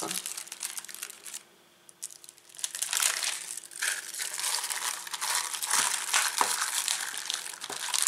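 Plastic film wrapper and foil packet crinkling and rustling as rolled puff pastry dough is unwrapped and unrolled by hand, with a brief pause about one and a half seconds in.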